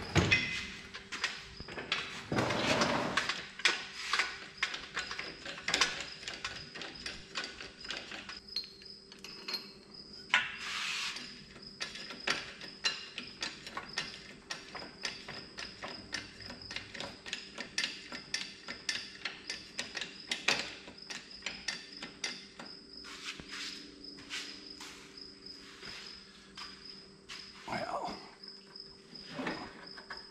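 Irregular metal clinks and knocks of a lifting chain and hook as a cherry picker is positioned and its chain hooked to a tractor's hydraulic unit, with a steady high-pitched tone underneath.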